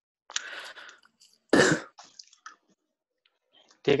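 A person clears their throat with a rough, breathy rasp, then coughs once, loudly, about a second and a half in.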